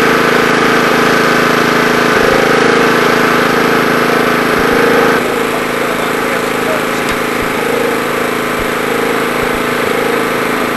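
A steady, constant-pitched engine-like drone that changes abruptly about five seconds in.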